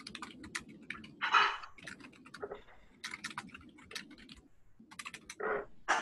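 Typing on a computer keyboard: a quick, uneven run of key clicks, with a louder, noisier burst about a second and a half in and again near the end.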